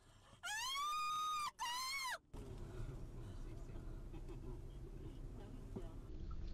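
A person screams twice, a high cry of about a second followed by a shorter one, rising and falling in pitch. Steady low street-traffic rumble follows.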